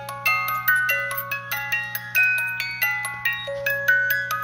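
Wind-up music box movement playing a tune: the pinned cylinder plucks the steel comb, giving bright ringing notes several times a second, over a faint steady low hum.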